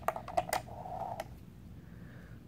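A quick run of light clicks and taps as a hand handles a stainless steel digital kitchen scale on a rubber mat, with one last click about a second in.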